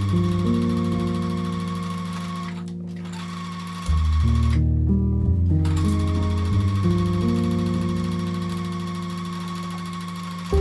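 Domestic sewing machine stitching steadily, stopping briefly about three seconds in and again for about a second around five seconds, then running on. Background music with sustained chords plays throughout and is the louder sound.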